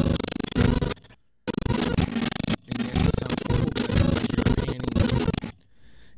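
A video's intro soundtrack heard through Blender's audio scrubbing: as the playhead is dragged across the strip, the audio plays in garbled, stuttering snatches at the wrong rate, sounding horrible. It breaks off briefly about a second in and again near the end.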